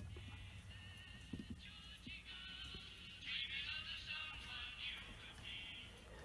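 Faint broadcast-radio music with singing, played through an LS-671/VRC military loudspeaker, sounding thin and tinny with little bass.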